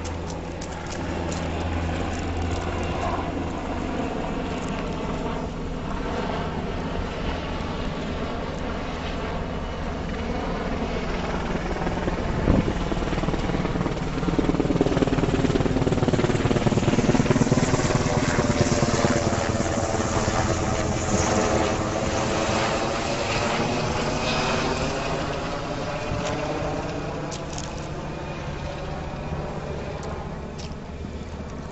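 Black Hawk helicopter running with a steady rotor and turbine drone. It grows louder with a sweeping, phasing tone from about halfway through as it passes closest, then eases off. A single sharp knock sounds a little before the middle.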